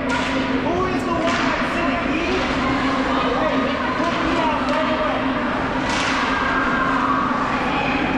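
Ice hockey game in an echoing rink: voices calling out over a steady hum, with sharp cracks of sticks and puck, a quick few about a second in and another about six seconds in.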